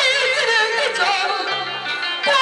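A woman singing a Taiwanese opera aria into a microphone, her voice wavering with heavy vibrato and ornamented slides, over a sustained instrumental accompaniment.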